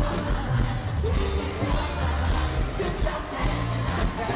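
Live pop band music in a large arena, with strong bass, heard from among the audience with crowd noise underneath.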